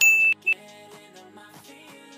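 Loud electronic beep, one long tone and then a short one about half a second later, signalling that the quiz countdown timer has run out. Background pop music with singing plays underneath.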